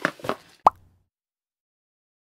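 A few brief soft sounds, then a single sharp short pop a little over half a second in.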